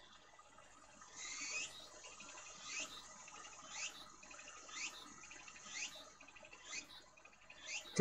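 A bird calling faintly, a short sweeping high-pitched chirp repeated about once a second.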